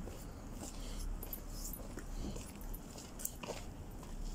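Faint sounds from a small Jack Russell terrier on a leash, low against background noise, with one short click about three seconds in.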